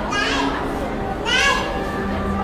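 Children's voices in a busy crowd, with two short high-pitched child calls, one at the start and one about a second and a half in, over a steady background of chatter.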